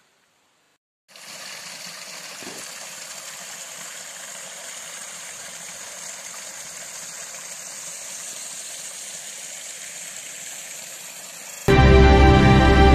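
Small woodland brook running over rocks: a steady, even rush of water that begins about a second in. Loud music cuts in just before the end.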